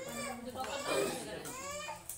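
People talking in lively, high-pitched voices, child-like in places, with no other sound standing out.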